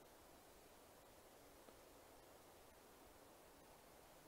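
Near silence: a faint, even hiss.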